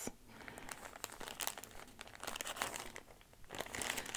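Clear plastic bag of DMC embroidery floss skeins crinkling faintly and irregularly as it is handled.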